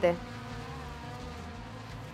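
Faint, steady buzz of racing car engines heard from a distance, a droning hum without clear revving.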